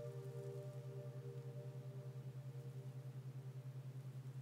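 Quiet ambient background music: a low held hum pulsing rapidly in loudness, with fainter higher sustained tones that fade away.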